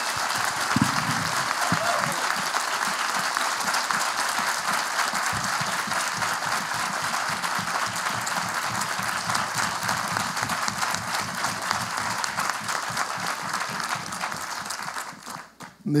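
Large auditorium audience applauding steadily, dying away about a second before the end.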